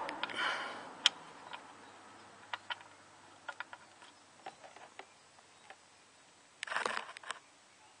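Steel oil-pan drain plug of a 1.9 TDI engine being spun out by hand, making faint scattered ticks of metal on metal, with a short noisy burst near the end as it comes free and the oil starts to drain.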